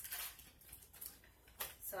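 A thin plastic bag crinkling and rustling as it is pulled open and off a bundle of wooden clothespins, with a sharper crackle about one and a half seconds in.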